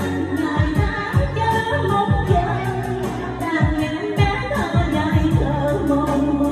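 A woman singing a Vietnamese song into a microphone over a pop backing track with a steady drum beat.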